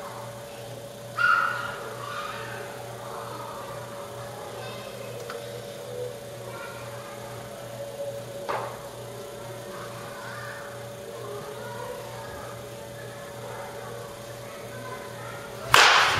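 A baseball bat hitting a pitched ball near the end: a sharp crack, the loudest sound, that rings on briefly. A quieter knock comes about halfway, over a steady hum.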